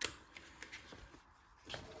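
Pages of a small paper instruction booklet being leafed through: a sharp paper snap at the start, then a few faint page flicks and rustles.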